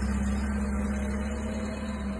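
Forklift engine running steadily with a low hum as the truck drives off.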